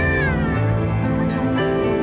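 Soft instrumental background music with sustained notes. Right at the start, a short high glide falls in pitch over about half a second.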